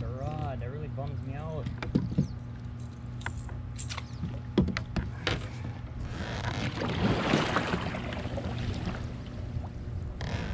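A few sharp knocks, then about three seconds of water splashing as a kayak paddle blade dips and strokes through the water from about six seconds in.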